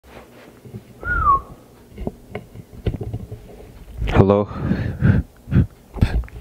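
Microphone being handled during a sound check: a short falling whistle-like tone about a second in, then a few light clicks and taps on the mic, before a man's voice says "Hello?".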